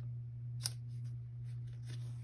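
Hands handling the paper pages of a planner, giving a few faint, crisp ticks and rustles, the clearest about two-thirds of a second in, over a steady low hum.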